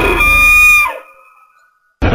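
A dubbed creature call sound effect: one held, high-pitched call that slides down in pitch about a second in and fades away, leaving silence.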